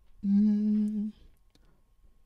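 A man humming one steady low note into a handheld microphone, held for just under a second.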